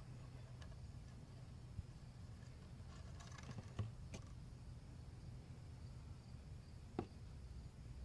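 Quiet steady low hum with a few light clicks and taps from a homemade plastic-bottle funnel being handled in a spark plug well; the sharpest tap comes about seven seconds in.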